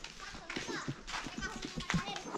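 Faint children's voices and calls, with no other distinct sound.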